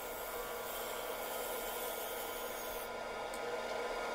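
Steady, even hiss of workshop machinery as a wood lathe spins a large bowl.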